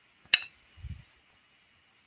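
A single sharp clink from a hand-painted ceramic bowl being handled, followed just under a second in by a soft low thump.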